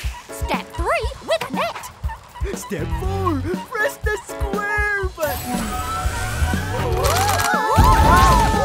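Cartoon soundtrack: bouncy children's music under short, excited wordless vocal exclamations from the characters. From about five seconds in, a shimmering magical sound effect with swooping glides builds and grows louder toward the end.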